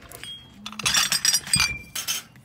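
Glass ashtrays clinking together as they are handled and set down, with a run of bright, ringing clinks in the second half.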